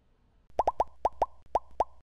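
Cartoon sound effect: a quick, uneven run of about seven short plops, each a click with a brief upward-sliding pitch, starting about half a second in and stopping abruptly at the end.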